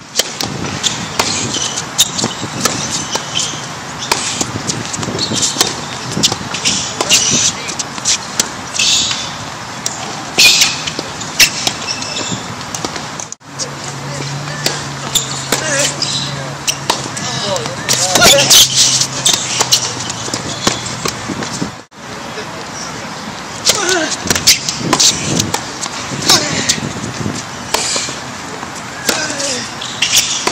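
Tennis balls struck by rackets and bouncing on a hard court during rallies: a running series of sharp pops and thuds. The sound drops out briefly about thirteen and twenty-two seconds in, and a low steady hum sits under the play for several seconds in the middle.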